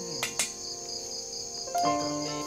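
Crickets chirping in a steady, rapidly pulsing night chorus, with two sharp clicks shortly after the start.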